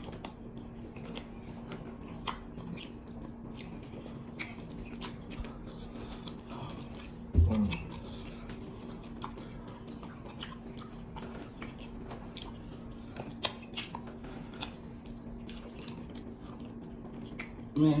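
Close-miked chewing of soft amala with egusi soup, with scattered small wet clicks from mouths and fingers in the food. A short hummed "mm" comes about seven seconds in.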